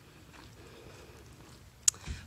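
Faint, steady outdoor background hiss during a pause in talk, with one sharp click near the end.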